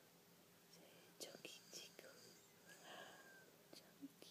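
Near silence, with a few faint clicks and a soft whisper about three seconds in.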